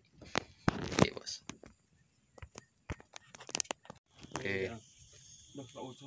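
Scattered short clicks and knocks, then from about four seconds in a steady high-pitched insect drone, with a brief voice sound in between.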